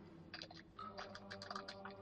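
Faint, irregular clicking of computer keyboard keys being typed on.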